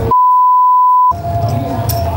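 A single steady electronic beep, one pure tone about a second long, that replaces all other sound while it plays, like a bleep laid over the audio in editing. When it stops, the background din comes back.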